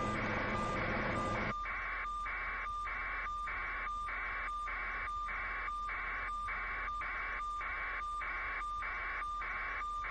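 A vehicle's backup alarm beeping steadily, about two beeps a second. A vehicle engine runs underneath at first and cuts out about a second and a half in.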